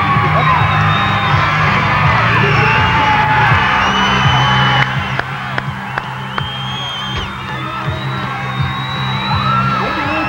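Music playing with a watching crowd whooping and yelling over it. It gets somewhat quieter about halfway through.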